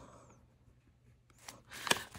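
A pause in speech in a small room: quiet room tone, then a couple of short, sharp soft noises near the end.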